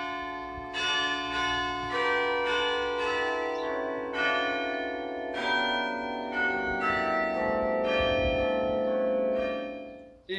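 A church carillon playing a slow melody: bell notes struck one after another, each ringing on under the next, fading out near the end. It is the new 64-bell carillon of Rouen Cathedral, heard as a recording.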